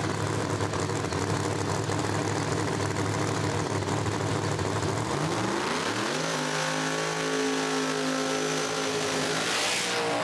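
Drag race car engine running steadily at low revs, then revving up quickly about five seconds in and holding a higher steady note, with a short burst of noise near the end.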